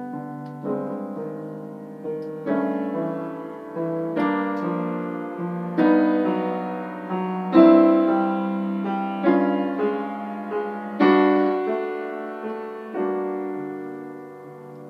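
Grand piano played solo in a slow nocturne: full chords struck about every second or two, each ringing on and fading before the next, the loudest just past the middle.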